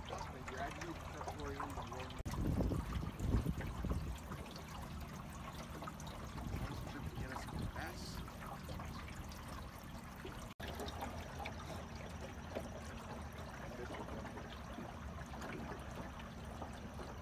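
Water trickling and lapping around a small boat moving on a lake, over a steady low hum. A loud low rumble of wind on the microphone comes about two seconds in.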